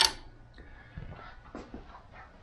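A brief sharp click right at the start, then a few faint small taps: printed plastic parts being handled on a 3D printer's glass bed.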